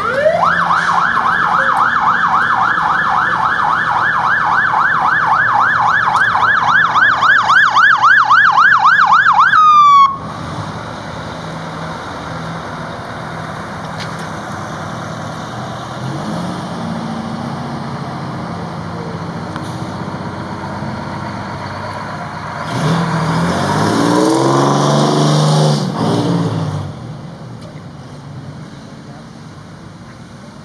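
Fire truck siren in yelp mode, sweeping rapidly up and down about three times a second and quickening before it cuts off suddenly about ten seconds in. Fire truck engines then rumble as the trucks pull out, with a louder engine revving up near the end.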